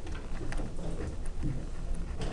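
Faint, scattered light ticks and scratches of a felt-tip pen on paper, over a low steady room rumble.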